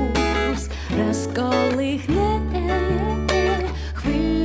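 A woman singing a pop song live with a small band: acoustic guitar strumming over sustained electric bass notes.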